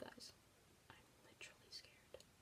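Faint whispering under the breath: a few short, breathy syllables with a hissy sound.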